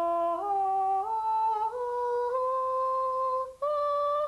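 A man singing up a scale on a sustained 'ah' for a vocal range test. He steps up one note about every half second, holds the top note longer, breaks off briefly near the end, and then takes a note higher.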